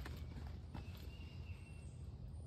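Faint low rumble with a few light taps, and a thin high tone for about a second in the middle.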